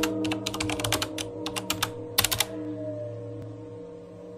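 Computer keyboard typing: a quick irregular run of keystroke clicks through the first two and a half seconds, then stopping, over a low steady droning tone.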